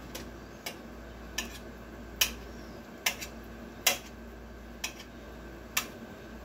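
Knife tapping against a metal pot as potatoes are cut into pieces in it: a sharp click about every second, eight in all.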